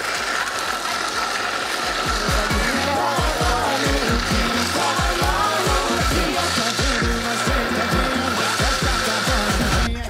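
Countertop blender running steadily with a high motor whine, blending homemade lemonade, then cut off suddenly right at the end. Upbeat music with a steady beat plays over it from about two seconds in.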